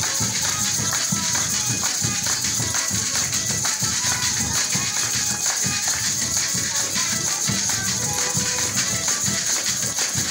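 Venezuelan Christmas parranda percussion playing a steady, fast rhythm: a large hand-beaten drum under a constant shaking hiss of maracas and tambourine.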